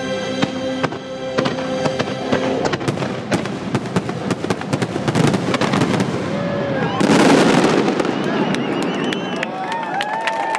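Fireworks display finale: a rapid run of bursts and crackling over sustained show music, building to a loud dense barrage about seven seconds in. Crowd whoops and cheers rise near the end.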